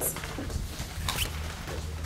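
Students moving about a classroom to form groups: scattered shuffling and short knocks, with a brief high squeak about a second in, over a low steady hum.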